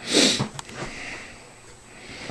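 A person sniffing once, sharply and close to the microphone, in the first half second.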